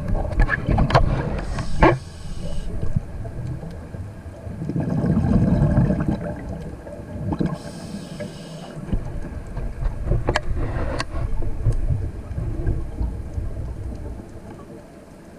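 Scuba breathing through a regulator underwater: two short hissing inhalations, each followed by a longer rumbling burst of exhaled bubbles, a cycle of about five seconds. A few sharp clicks come in the first two seconds and again around ten seconds in.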